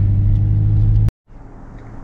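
Steady low drone of a pickup truck heard from inside the cab while driving. It cuts off abruptly about a second in, giving way to a much quieter outdoor background.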